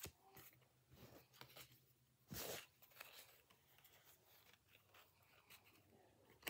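Near silence with faint handling of Pokémon trading cards: soft slides and clicks as the cards are sorted in the hands, with one slightly louder short rustle about two and a half seconds in.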